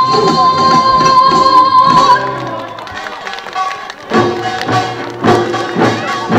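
Korean traditional pungmul music: a long held high note, then regular percussion strikes from about four seconds in.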